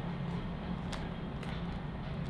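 Steady low background hum with an even hiss, and a single faint click about a second in.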